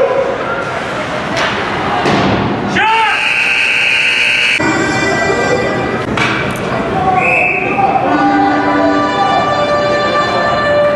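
Ice hockey game heard from the stands: spectators' voices and thuds of pucks and sticks, with a long high whistle blast about three seconds in. In the second half arena music plays under the crowd, with another short whistle near the seven-second mark.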